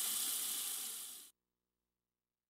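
A soft, even hiss that fades and then cuts off abruptly just over a second in, leaving silence.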